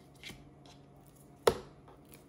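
A raw lamb chop being turned over by hand and set down on a cutting board: soft handling noise, then one sharp thud about one and a half seconds in.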